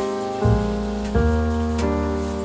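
Background piano music: sustained chords, a new note or chord struck about every three-quarters of a second.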